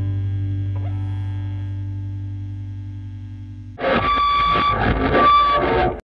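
A final distorted electric guitar chord over a low bass note rings out and slowly fades. About four seconds in, a sudden, much louder burst of sound cuts in and stops abruptly at the very end.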